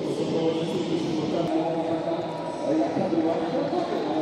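Indistinct voices that no words can be made out of, with a steady murmur of sound around them.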